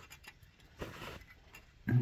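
Faint scattered clicks and ticks, with a brief soft hiss about a second in.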